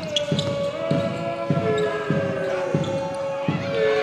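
Live basketball game sound in an indoor arena: regular thuds about every two-thirds of a second, under long held tones that run across most of the stretch.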